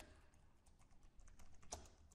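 Faint typing on a computer keyboard: a quick run of key clicks from about half a second in, with one louder click near the end.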